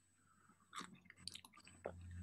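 Near silence with a few faint, short clicks in the second half, like small mouth noises.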